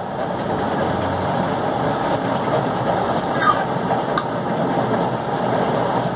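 A steady, loud machine noise runs without a break, with a short faint whistle about three and a half seconds in and a single click just after four seconds.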